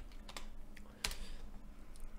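A few separate computer keyboard clicks, the loudest about a second in.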